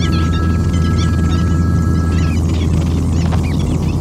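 A loud, steady low hum with many short, high chirps over it, and a pair of steady high tones that stop about two seconds in.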